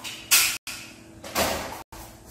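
Two quick scratchy strokes of a pencil rubbing across paper, each fading away, separated by brief gaps of silence.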